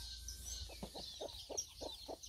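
Chickens clucking: a run of short low clucks, about five a second, starting under a second in, with faint high peeping above them.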